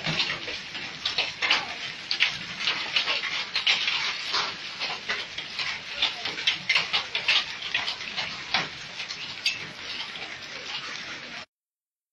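Large hailstones and rain falling hard on pavement and cars: a dense, irregular patter of sharp impacts. It cuts to silence for about half a second near the end.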